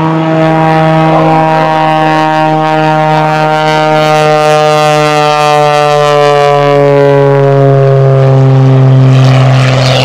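Extra 300 aerobatic plane flying past: a steady engine-and-propeller drone whose pitch sinks slowly, growing louder toward the end, when a rush of propeller noise comes in as the plane draws close.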